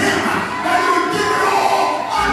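Live gospel worship: a man singing into a microphone over music, with congregation voices joining in.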